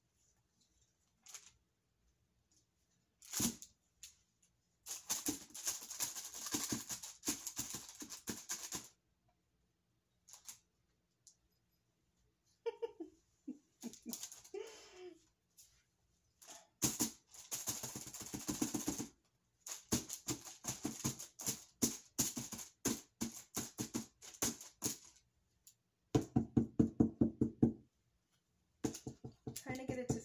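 Bursts of rapid light tapping and knocking, roughly ten a second, from a wet canvas board being handled and tilted over a plastic tray, with short gaps between the bursts.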